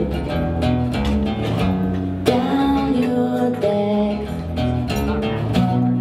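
Live solo acoustic guitar, strummed steadily, with a woman singing long held notes over it from about two seconds in.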